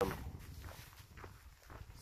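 Footsteps of a hiker walking on a trail, irregular soft steps over a low rumble on the microphone, with a brief cut-off scrap of voice right at the start.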